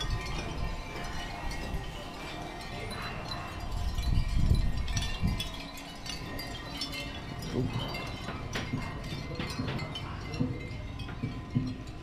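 Hanging shell wind chimes, flat round shell discs and strands of small shells, clinking and tinkling as the breeze stirs them. A low rumble swells about four seconds in.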